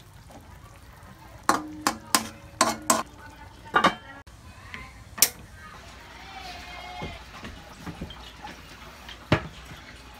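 A metal utensil clinking against a wok: about six sharp, ringing strikes in quick succession over two and a half seconds, then single knocks about five seconds in and near the end.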